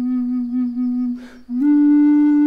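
Wooden contrabass Native American-style flute (pimak) in A holding a low, steady note that fades out about a second in. A short breath follows, and then the next note starts, a little higher.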